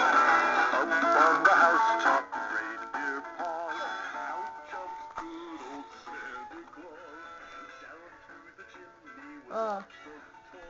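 Animated dancing Santa Claus figures playing their recorded Christmas song with singing. It is loud for about the first two seconds, then drops much quieter and fades away, with a short louder sung phrase near the end.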